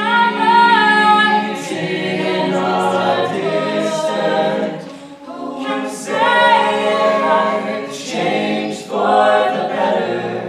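Co-ed a cappella group singing in sustained harmony, a man singing lead into a handheld microphone over the other voices' backing chords. The singing fades briefly about halfway through, then swells again.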